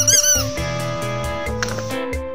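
Children's background music with a steady beat. In the first half second a toy penguin squeezed in the hand gives a quick run of high squeaks.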